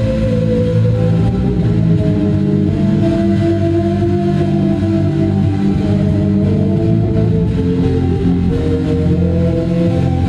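Live band playing slow, steady drone music: electric guitar and several long held notes over a heavy low end, without breaks.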